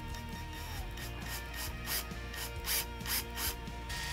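Cordless drill running slowly, a faint steady motor whine, with a small wood bit boring a pilot hole into the heel of an acoustic guitar's neck: short rasps of the bit cutting wood, about three a second, from about a second in.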